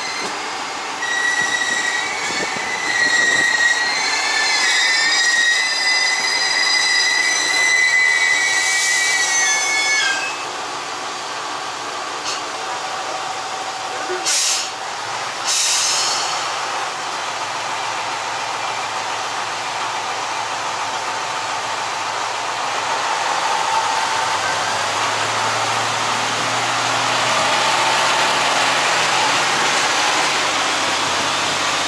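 Diesel railcar running on the rails, heard from an open-air deck: the wheels squeal shrilly for the first ten seconds or so, then the running settles into steady rail and wind noise. Two short bursts of noise come about a second apart midway. The engine's low hum grows in the last few seconds.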